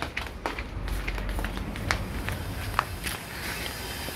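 Footsteps on an outdoor paved path: a few scattered taps over a low rumble.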